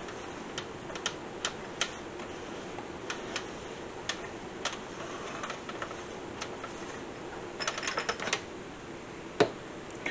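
Spice jars clicking and knocking against one another and the spice rack as they are picked up, turned and set back, in scattered light taps. A quick run of clicks comes late on, then one sharper knock just before the end.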